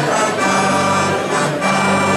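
Accordion, acoustic guitar and saxophones playing a traditional Catalan caramelles tune, mostly instrumental here, with held melody notes over stepping bass notes.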